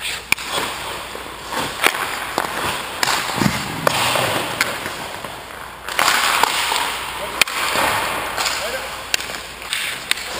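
Hockey skate blades scraping and carving across rink ice, in two long stretches, with several sharp clacks of stick and puck; the loudest clack comes about seven seconds in.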